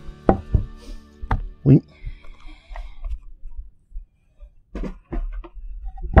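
Cut boards of 1x12 dimensional lumber being handled and set down on a wooden work table: a series of sharp wooden knocks, several in the first two seconds and a few more near the end.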